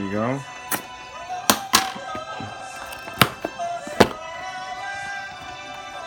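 Background music plays while a cardboard shipping box is handled and opened, with a handful of sharp taps and clicks spread over the first four seconds. A brief voice sound comes right at the start.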